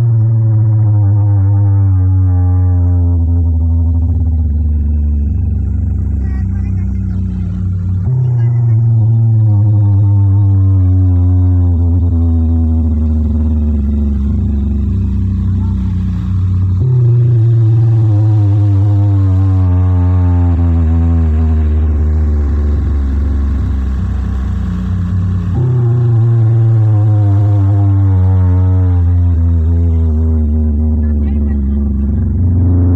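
Loud, bass-heavy electronic tone played through a large DJ sound box of horn loudspeakers driven by a rack of power amplifiers. The tone glides slowly down in pitch over about eight seconds, then starts again high, four times over, as the newly set-up system is tested.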